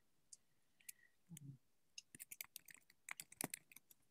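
Near silence with faint, irregular clicking, thicker in the second half.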